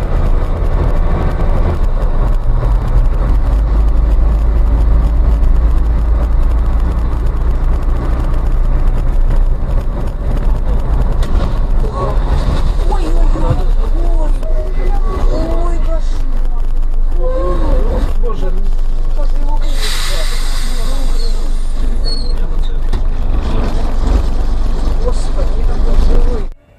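Loud, steady engine and road rumble of a vehicle on the move, with voices about halfway through and a brief burst of hiss about twenty seconds in.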